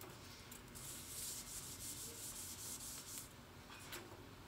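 A scratchy rubbing noise in quick repeated strokes, about four a second, lasting a little under three seconds.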